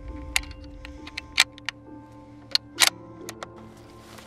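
A string of sharp metallic clicks from a scoped bolt-action hunting rifle being loaded and its bolt worked, heard over background music. The loudest clicks come about a second and a half in and again near three seconds.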